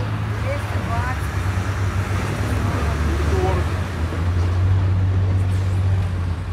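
A steady low engine hum from running machinery, with a few brief, faint snatches of workers' voices.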